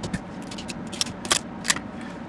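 Flat chisel blade prying the raft off a 3D-printed ABS part: a string of small sharp clicks and crackles as the plastic raft starts to separate, the loudest about a second and a third in and again near the end.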